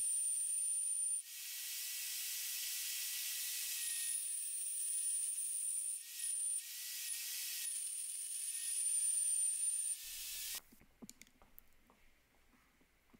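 Portable band saw in a bench stand cutting through steel: a steady hissing rasp with a thin high whine. It drops off briefly twice and stops about ten and a half seconds in, leaving a few faint clicks.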